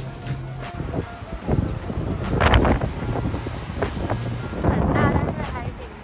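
Strong wind gusting on the microphone, with two loud surges about two and a half seconds in and again near five seconds, over background music with short steady bass notes.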